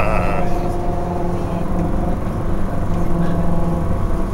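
City bus engine running with a steady hum and a low rumble, heard from inside the passenger cabin.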